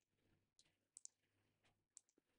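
Near silence, with two faint computer-mouse clicks about a second in.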